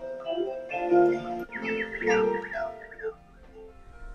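A recording of solo harp with birdsong over it, played back. Plucked harp notes ring and die away, a bird gives a run of quick falling whistled notes about halfway through, and then the sound fades down under a long fade-out near the end.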